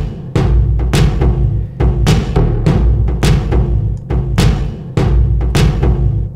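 Playback of a song's programmed rhythm track from an Ableton Live drum rack: sharp sampled drum hits about twice a second over heavy, sustained low end. The drum rack runs through a Thermionic saturation plugin that pumps and warms its sound.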